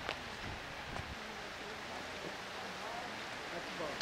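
Faint outdoor ambience with a steady hiss and a few soft clicks, and faint distant voices near the end.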